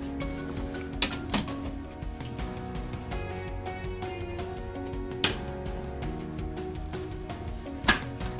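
Background music with four sharp plastic clicks and knocks as the lid of a plastic compost bucket is pressed down and snapped shut to seal it airtight.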